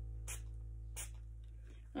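A plastic trigger spray bottle misting water onto bread dough, two short hissing spritzes about a third of a second and a second in. Soft background music with held notes fades underneath.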